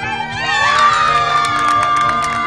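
A group of women shrieking and cheering, starting about half a second in with one long high scream held through the rest, in reaction to a bridal bouquet being tossed to them. Music plays underneath.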